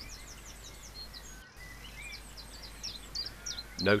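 Small songbirds singing: a run of quick, high, downward-sliding notes repeating throughout, over a faint steady hiss.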